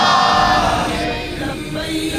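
Men's voices chanting a melodic religious refrain together through a microphone, a long wavering held note at the start giving way to shorter sung phrases.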